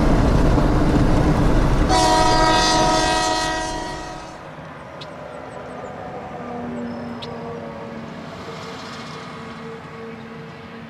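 Diesel locomotives rolling past with a heavy rumble, their air horn sounding a held chord about two seconds in. The horn and rumble fade out after about four seconds, leaving a much quieter steady hum.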